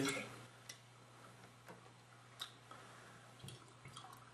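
Quiet room tone with a steady low hum and a few faint, scattered clicks; a louder sound fades out right at the start.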